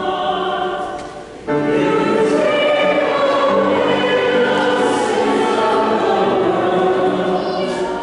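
Choir singing a hymn, with a short break between phrases about a second in before the singing resumes.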